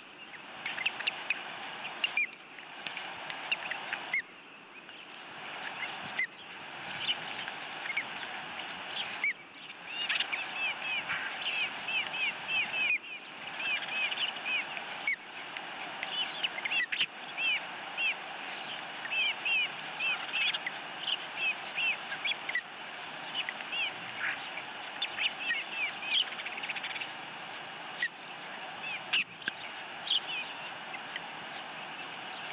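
Ospreys chirping at the nest while a chick is fed: many short, high, downward chirps, few at first and thick from about ten seconds in, over a steady outdoor hiss. Sharp clicks come every couple of seconds.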